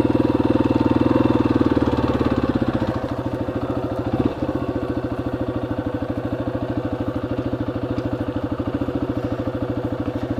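Yamaha XT250's air-cooled single-cylinder four-stroke engine running at low speed, easing off about three seconds in and settling to a steady idle, with a brief thump just after.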